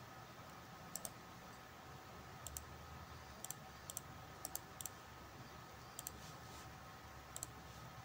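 Computer mouse clicking: about a dozen faint, irregular clicks, some in quick pairs, as components are dragged and wired in a circuit-simulation program. A faint steady hum lies underneath.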